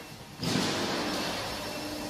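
Steady workshop background noise, a hiss with faint steady tones, that comes in suddenly about half a second in.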